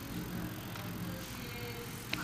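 Room noise: a low steady hum with faint, indistinct off-microphone voices.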